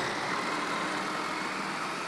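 Food processor motor running steadily, its blade blending smoked trout and cream cheese into a pâté.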